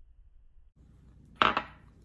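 A single sharp knock about one and a half seconds in, typical of a kitchen knife striking a plastic cutting board, over faint room tone.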